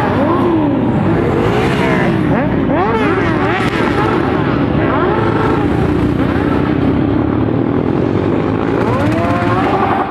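A column of motorcycles riding past one after another. Their engines rev up and down in many overlapping rising and falling pitches, with no break.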